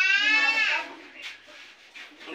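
A person's high, drawn-out vocal cry, lasting under a second, its pitch sliding down as it ends.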